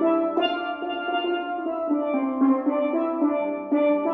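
A trio of steel pans played with sticks, several pans striking pitched notes together in a quick, rhythmic tune.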